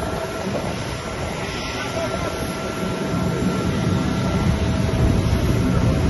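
Jet airliner noise on an airport apron: a steady low roar with a faint high whine held through the first few seconds, growing slightly louder toward the end.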